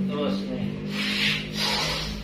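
Hands rubbing and pressing on cloth shorts over a patient's thigh during massage. There are two short rasping rubs, about a second in and near the end, over a steady low hum.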